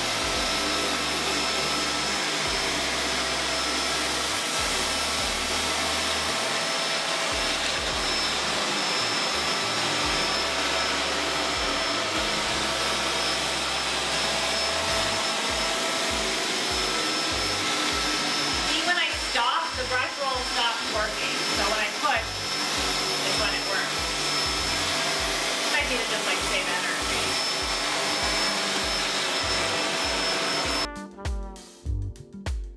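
Kenmore DU2001 bagless upright vacuum running steadily on carpet with a constant motor whine as it is pushed back and forth, sucking up loose debris.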